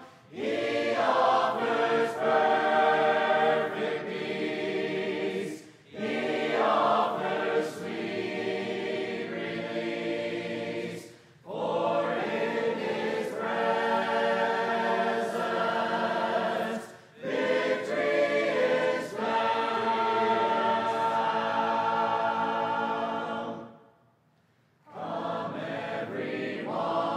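Church congregation singing a hymn a cappella, men's and women's voices together without instruments. The singing goes in phrases broken by brief pauses, with a longer pause near the end.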